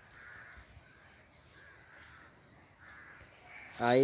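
A bird gives a string of short, harsh calls, about two a second. Near the end a man's voice calls out loudly.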